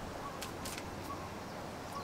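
A small electric fan running steadily, with a couple of faint, brief high ticks about half a second in.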